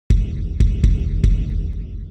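Low, throbbing rumble with four sharp clicks scattered through it. It sets in suddenly and cuts off abruptly. This is a sound-design effect laid under an animated title card.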